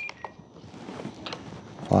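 Spektrum NX8 radio transmitter: a short high menu beep right at the start, then faint scattered clicks of the scroll wheel being turned to set the expo value.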